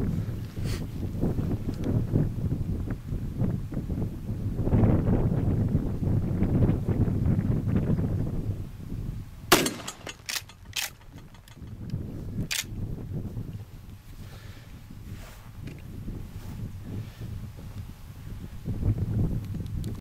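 A 12-gauge shotgun firing a single round of 00 buckshot a little before halfway through, a sudden sharp report, followed by a few fainter sharp cracks over the next three seconds. Wind rumbles on the microphone throughout.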